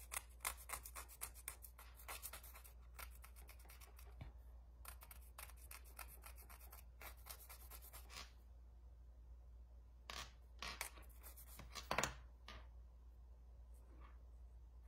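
Nail file rasping in quick short strokes against the edge of a nail strip on a fingernail, filing off the excess at the tip. The strokes come several a second for about eight seconds, then a few separate strokes near the end.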